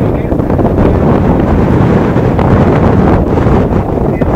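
Loud, steady wind buffeting the microphone, a dense low rumble with no let-up.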